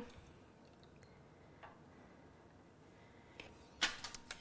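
Quiet room tone with a few faint ticks of a silicone spatula against a small stainless-steel saucepan as sauce is scraped out, and one sharper click near the end.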